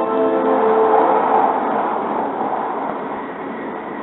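The last notes of the onboard announcement chime fade out in the first half second, leaving the steady running noise of a W7 series Hokuriku Shinkansen train heard from inside the passenger cabin, easing slightly toward the end.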